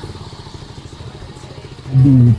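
Motorcycle engine running at low speed, a steady fast pulsing note as the bike rolls slowly along.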